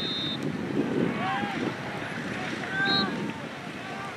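Distant shouts and calls from players and people around an open soccer field, with wind rumbling on the microphone. A brief high steady tone sounds at the very start.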